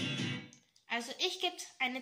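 A recorded song with guitar, played back from a television, cuts off abruptly about half a second in. After a short silence a girl starts speaking.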